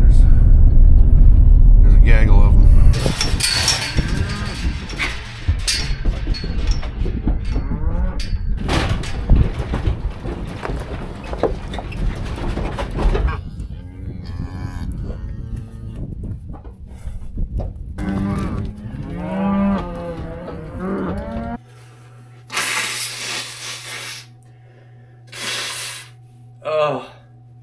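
Black Angus cows and calves mooing repeatedly, after a few seconds of low rumble inside a pickup truck's cab. Near the end, a man blows his nose twice over a steady electrical hum.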